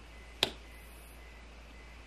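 A single sharp tap about half a second in, a tarot card being set down on a spread of cards on a table, over a faint low hum.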